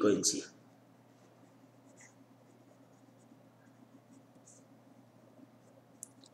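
Faint scratching of a pen writing on paper, a few soft strokes, over a steady low hum.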